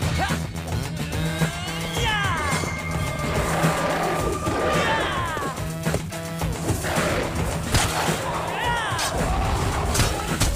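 Cartoon fight-scene soundtrack: music over a steady low drone, with crashing impact effects. Sweeping sound effects rise and fall three times, and a quick run of sharp hits comes near the middle.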